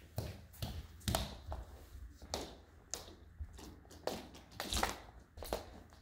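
Footsteps on a wooden floor laid with rugs: irregular taps and soft thumps, one or two a second.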